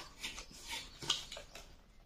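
A few light taps and rustles from a small box and paper being handled, spaced over the first second and a half and then dying away.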